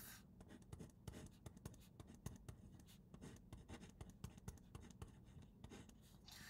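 Faint scratching of a pen writing on paper, a quick run of short strokes.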